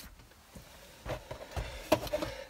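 A few faint knocks and handling noises, about three, with the last near the end the strongest: the freshly removed plastic instrument cluster being handled.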